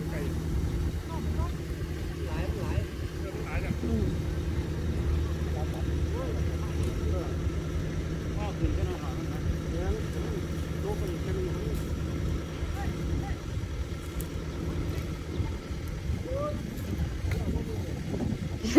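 An engine running steadily at low speed, a constant low hum, with faint distant voices over it.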